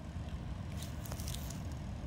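Steady low outdoor background rumble with a few faint light clicks, and no distinct foreground sound.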